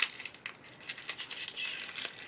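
Faint rustling and light ticks of paper being handled, as pages of a notebook are fingered.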